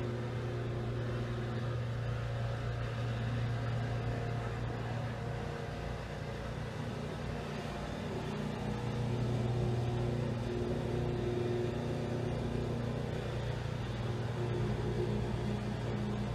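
A steady low background hum, even throughout, with a few faint steady tones above it and no sharp sounds.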